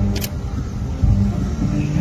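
Band playing a national anthem, with long held notes in the low brass. A brief sharp click comes just after the start.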